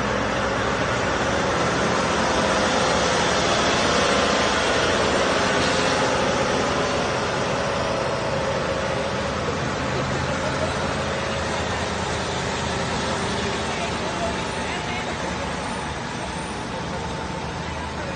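Heavy diesel trucks and a long multi-axle heavy-haul trailer rolling slowly past, engines running steadily with a faint whine. The sound is loudest about four seconds in and fades slowly toward the end.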